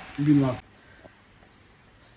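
A short burst of a person's voice right at the start, then faint, high bird chirps over quiet background noise.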